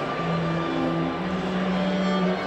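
A string ensemble of violins and a cello playing long, held notes, the lowest part stepping up in pitch about halfway through.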